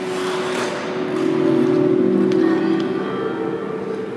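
Free-skate program music with held, sustained tones, mixed with the hiss of skate blades scraping the ice near the start and a sharp click a little over two seconds in.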